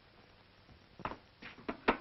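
A few short, sharp knocks and clicks in about a second over a faint steady hiss, the last one the loudest.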